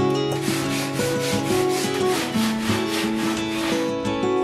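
Sandpaper rubbed by hand over a wooden plank in rapid, even back-and-forth strokes, stopping just before the end, over soft guitar music.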